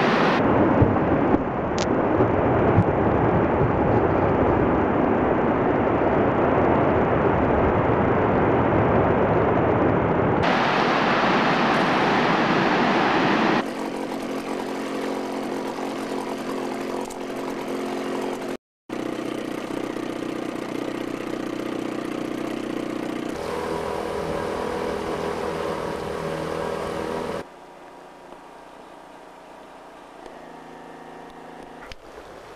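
Tidewater glacier calving: a long, loud rumble of ice collapsing into the water for about the first thirteen seconds. After that, across several cuts, a quieter steady motor drone like a boat's engine, with a brief dropout in the middle and a further drop in level near the end.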